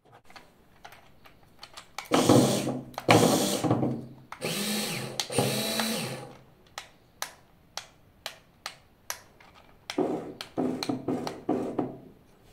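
Small CaDA electric motors running under remote-control commands in three bursts of a couple of seconds each, whirring with a pitch that rises and falls as they speed up and slow down. Sharp short clicks come between the bursts.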